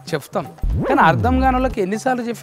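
A comic sound effect of a dog yelping and whimpering, laid over a sweeping whoosh with a low rumble, lasting about a second from just past half a second in. A word of speech comes before it.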